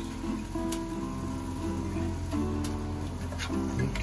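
Background music: an acoustic guitar strumming chords.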